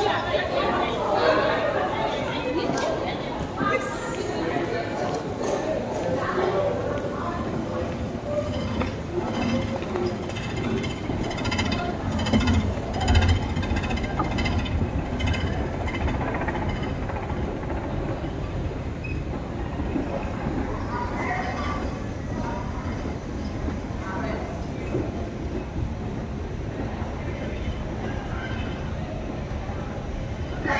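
Busy London Underground station sound: voices of passers-by echoing in a tiled hall, under a steady mechanical rumble of the long escalator being ridden, with a low thump about halfway through.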